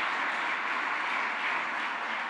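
Audience applause, slowly dying away.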